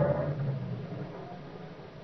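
Radio-drama sound effect of a car engine as the car backs up: a rising whine ends just after the start, and the low running hum then fades away.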